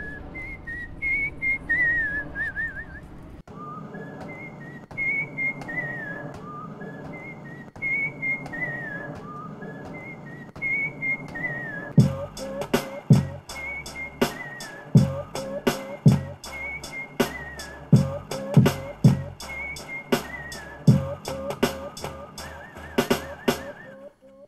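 Chopped samples of a man's whistling, looped into a short repeating melody as part of a hip-hop beat with a bass line under it. About halfway in, drum hits come in with low kicks.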